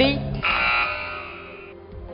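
Electronic quiz-show buzzer tone that starts about half a second in, holds one steady chord-like pitch and fades away over about a second.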